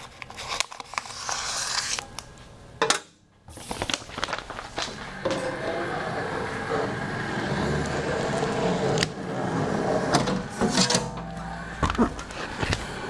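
Handling and cutting of a printed sign face's plastic backing film: crackling and crinkling of the sheet, stopping briefly about three seconds in, then a steadier rustling noise through the rest.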